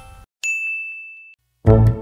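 A single bright chime sound effect rings for about a second and stops. Near the end, music with a heavy bass line starts.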